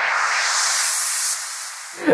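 Vengeance Avenger synth's 'FX Multinoise MW' noise preset: a hissing noise sweep rising in pitch as the mod wheel moves the filter, becoming a bright high hiss about halfway through and easing off slightly near the end.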